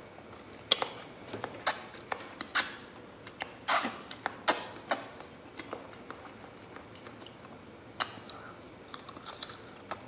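Close-up chewing of a mouthful of lo mein noodles: irregular wet mouth clicks and smacks, frequent over the first five seconds and then only a few.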